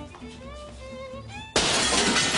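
A pane of glass being smashed: a sudden loud crash of breaking glass about one and a half seconds in, still going at the end, after faint gliding tones.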